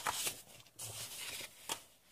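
Sheets of designer paper rustling as they are turned over by hand, louder at first and then softer, with a short sharp click near the end.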